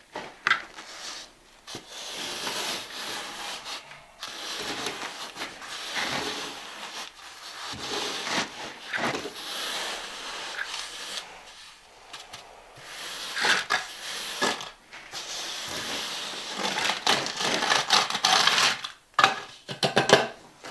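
A wooden float scraping and rubbing across a sandy cement mortar bed in repeated uneven strokes: the shower floor's mortar bed being screeded and floated flat.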